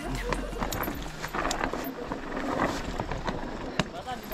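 Mountain bike rolling over a rough dirt trail: tyre noise on dirt and stones, with the bike's chain and parts rattling in a quick run of short knocks and clicks over the bumps.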